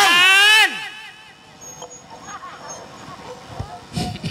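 A man's loud, drawn-out vocal cry through the stage microphone, its pitch sliding upward and then dropping away, cut off under a second in. After it only quiet stage background with faint voices remains.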